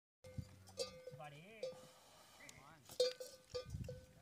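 A metal bell hanging from a camel's neck clanking irregularly as the camel shifts, about seven strikes, the loudest about three seconds in. Between the strikes, a faint wavering voice rises and falls.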